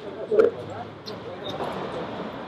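Indistinct voices of people talking, with one short thump about half a second in.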